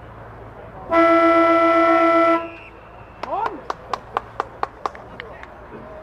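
A car horn sounds once, held for about a second and a half on one steady pitch. A short run of sharp claps follows, about four a second.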